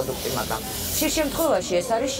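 A woman speaking in conversation, with a steady high hiss behind her voice that drops away about one and a half seconds in.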